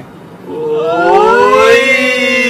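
A man singing one long held note that starts about half a second in and slowly rises, then begins to ease back down.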